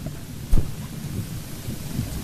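Room noise in a hall full of seated people: a low rumble with faint murmuring and rustling, and one sharp thump about half a second in.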